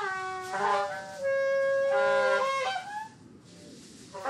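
Free-form reed wind instruments playing long held notes together, bending in pitch between notes. They drop out about three seconds in, leaving a brief quiet gap.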